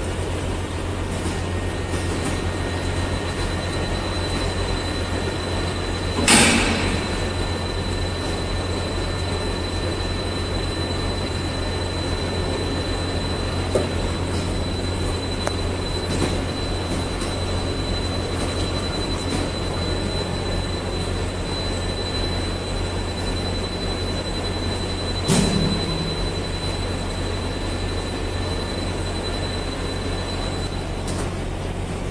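Cable extrusion line running: a steady low machine hum with a thin high whine. A brief loud burst breaks in about six seconds in, and again about twenty-five seconds in.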